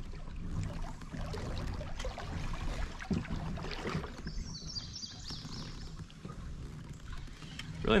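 Sounds of a kayak on the water: a steady low rumble with faint scattered clicks and knocks from rod-and-reel handling.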